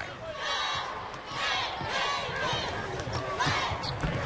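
Basketball arena ambience: a basketball being dribbled on the hardwood court under a murmuring crowd and scattered voices.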